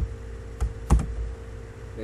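A few separate computer keyboard key presses, the loudest about a second in, over a steady hum.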